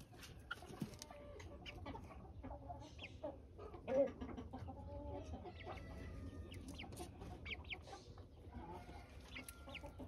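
A flock of young gamefowl chickens calling in short, scattered notes, with one louder call about four seconds in.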